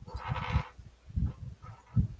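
A short animal cry lasting about half a second near the start, with a few low knocks and bumps as things are handled close to the microphone.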